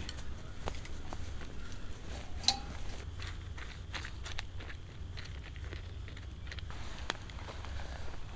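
Faint scattered clicks and rustles of dog food and a collapsible silicone bowl being handled, with one sharper click about two and a half seconds in.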